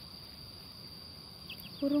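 Insects droning in one steady high-pitched tone over faint outdoor hiss. Near the end a few quick, falling chirps start up.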